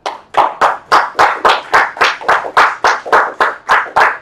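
Hand clapping in an even rhythm, about four distinct claps a second, loud and close to the microphone.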